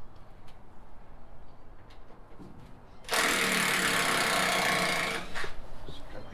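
A cordless power driver runs in one loud, buzzing burst of about two seconds, starting about three seconds in, backing out a screw that fastens the load's bracing to the shipping container's wooden floor.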